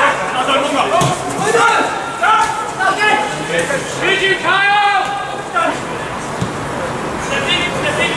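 Players shouting to each other across a football pitch: a string of short calls, the loudest a longer call about four to five seconds in.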